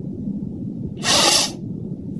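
A single sneeze, muffled by a hand held over the mouth and nose, about a second in and lasting about half a second.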